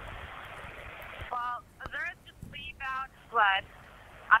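Steady hiss of an open telephone-quality line, then from about a second and a half in a voice speaking over it, thin and cut off in the highs.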